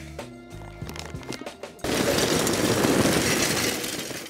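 Background music, then from about two seconds in a loud, steady rushing clatter of lump charcoal being poured from its bag into a metal chimney starter.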